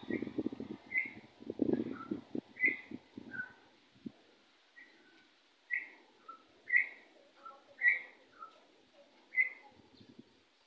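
Short whistled calls repeated about eight times, each a high note often dropping to a lower one. A low rustling with a few knocks runs through the first three and a half seconds.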